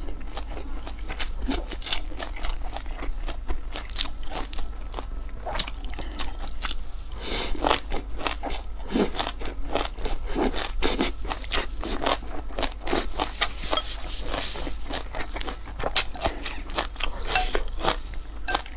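Close-miked chewing and crunching of food in a person's mouth, an irregular run of clicks and crunches.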